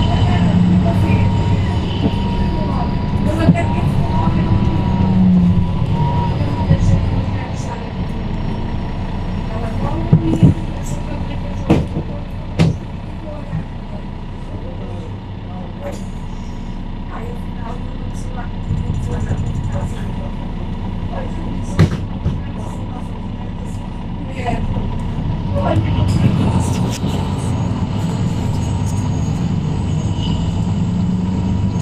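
Interior sound of a Mercedes-Benz Citaro C2 K city bus on the move, its OM936 six-cylinder diesel and automatic gearbox running. The engine is loudest at the start, eases off through the middle and rises again about 25 seconds in. Several sharp knocks and rattles come from the bus body along the way.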